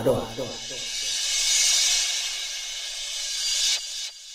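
A DJ-mix transition effect. A short processed voice warps downward in pitch, then a hissing white-noise sweep swells for about three seconds and cuts off suddenly.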